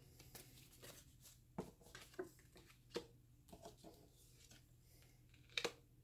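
Faint handling of a tarot deck: scattered soft taps and flicks as the cards are shuffled and drawn, then a sharper double snap of cards near the end as they are laid on the cloth.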